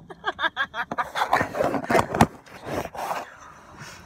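Indistinct voice sounds at first, then rustling and handling noise with two sharp clicks about two seconds in.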